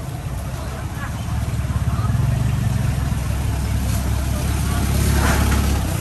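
A low, steady engine rumble from a motor vehicle running close by, growing louder about a second and a half in and then holding.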